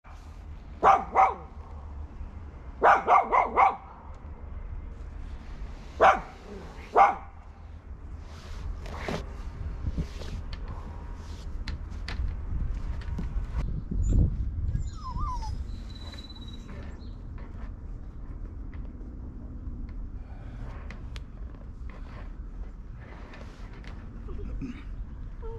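Small black-and-white puppy barking in short barks: two, then a quick run of four, then two single barks within the first seven seconds, followed by quieter scattered sounds.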